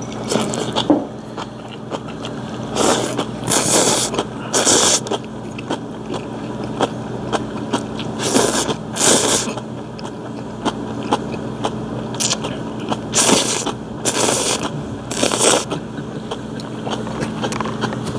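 A man slurping ramyeon noodles in loud sucking bursts, in runs of two or three about a second apart, with chewing in between.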